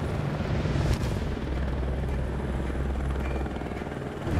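Helicopter flying overhead, its rotor and engine making a steady low drone, with a single sharp click about a second in.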